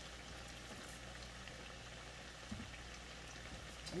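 Salmon croquettes frying in oil in a cast-iron skillet: a soft, steady sizzle and bubbling with small crackles. A faint thump about two and a half seconds in.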